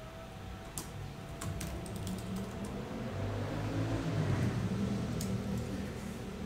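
A few scattered keystrokes and clicks on a laptop keyboard while a web page is brought up, over a low hum that swells through the middle.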